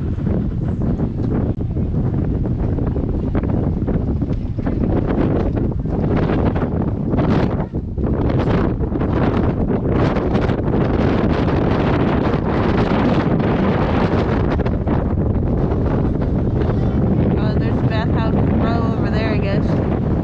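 Wind buffeting the camera microphone: a loud, steady low rumble that surges and dips in gusts.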